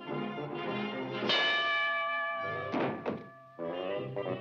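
Orchestral cartoon score with a long held chord from about a second in, and a dull thunk sound effect of a cartoon blow landing near the three-second mark.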